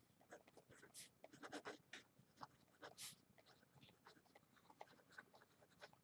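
Felt-tip pen writing on paper: a run of short, faint scratching strokes as the letters are drawn.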